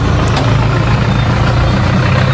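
A vehicle engine idling close by: a steady low drone that holds at one pitch.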